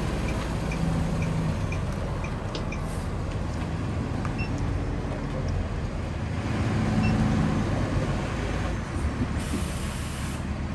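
The diesel engine of a Tiffin Allegro Bus motorhome runs at low speed as it pulls forward towing an enclosed trailer: a steady low rumble that swells slightly about seven seconds in. A brief hiss of air comes near the end.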